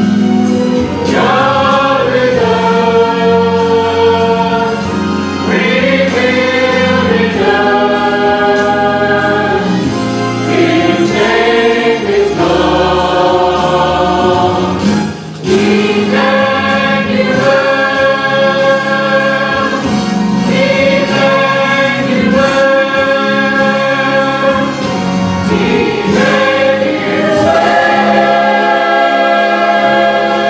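Mixed church choir of men's and women's voices singing, in long held phrases with a brief break about halfway through.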